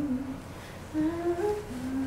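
A woman humming a slow melody, with held notes that step up and down in pitch.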